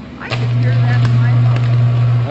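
Loud, steady electrical buzz of a 110 kV power line arcing to ground through trees, starting about a third of a second in, with a few sharp crackles: a line-to-ground short-circuit fault.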